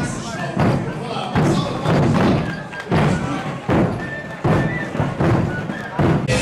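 Bass drums beaten by a marching street group in a steady rhythm of paired beats, two hits about half a second apart repeated every second and a half, with voices in the crowd around them.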